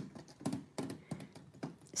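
Paint-soaked water gel beads dropping onto paper in a box: a faint, irregular patter of soft taps, several a second.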